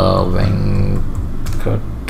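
Computer keyboard typing, a handful of keystrokes entering a word, with a man's voice drawn out over the first second.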